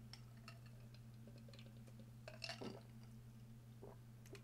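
Faint sounds of a man taking a drink of water: a few soft mouth clicks and a gulp or swallow about two and a half seconds in, over a low steady hum.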